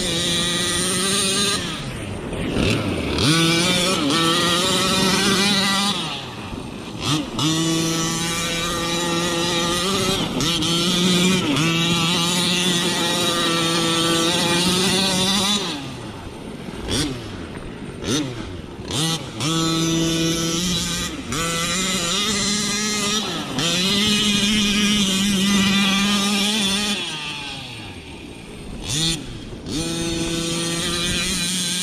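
Bartolone-modified Rovan 45cc reed-case two-stroke engine with a Bartolone tuned pipe, in a Losi 1/5-scale monster truck, running at high revs. It holds a steady high pitch for stretches of several seconds, and the revs drop and climb back up several times as the throttle is let off and reapplied.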